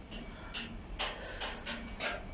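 A man exhaling cigarette smoke close to the microphone, in several short puffs of breath.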